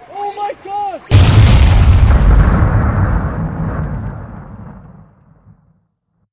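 Explosion sound effect: a sudden loud boom about a second in, followed by a deep rumble that fades away over about four seconds.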